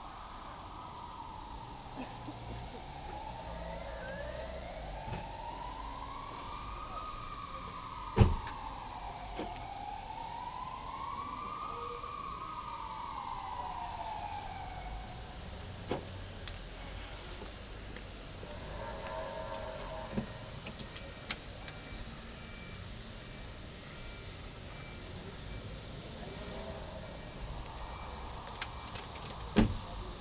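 An emergency vehicle siren wailing, slowly rising and falling in pitch, over steady street background noise; it dies away about halfway through. A few sharp knocks stand out, the loudest about eight seconds in and another near the end.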